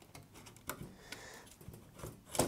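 Faint light clicks and ticks of metal and plastic parts being handled as a NAS's motherboard bracket is worked loose from its chassis by hand, with a couple of small clicks about a second in.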